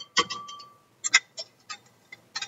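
A whisk and a measuring cup clinking against a glass mixing bowl while whipped cream is knocked into the eggnog mixture. The first clink rings briefly, and several lighter ticks follow.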